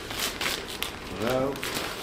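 Gift wrapping paper being torn and crumpled off a boxed plaque, a dense crackly rustle.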